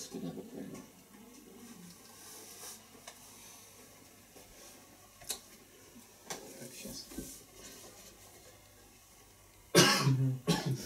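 Quiet room during a pause, with one sharp click about five seconds in and a sudden loud cough just before the end.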